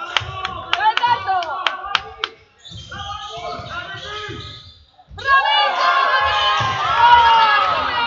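Basketball game on a sports-hall floor: the ball bouncing and sneakers squeaking in the first couple of seconds. About five seconds in, a louder stretch of players' and spectators' shouting takes over.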